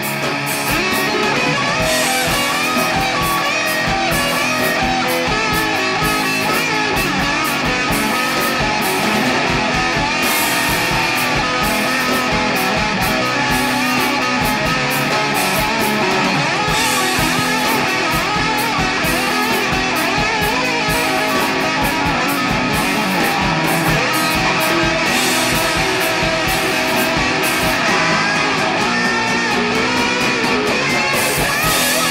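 Shoegaze rock music: a dense, steady wall of electric guitars over a driving beat.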